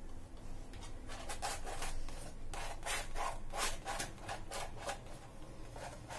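A paintbrush scrubbing paint onto a stretched canvas: a run of short, scratchy rubbing strokes, about three a second, starting about a second in.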